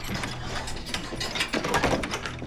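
A barred metal cell door being unlocked: a run of clicking and rattling from the key and lock, loudest near the end.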